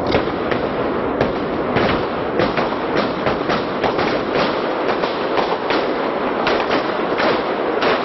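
Gunfire in a street: sharp shots at an irregular pace, two or three a second, over a steady noisy background.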